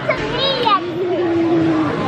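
A young girl's voice: a quick high call that rises and falls, then one long note held for about a second.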